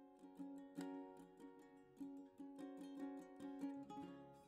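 Faint instrumental background music: a plucked string instrument playing a gentle run of notes.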